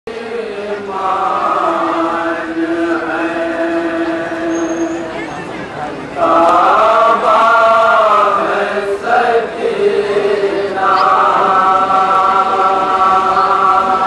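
Men's voices chanting a noha, a Shia mourning lament, in three long held phrases.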